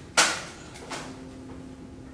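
A classroom tablet-arm desk chair knocking as someone drops into it: one sharp, loud clack about a quarter second in, then a smaller knock about a second in.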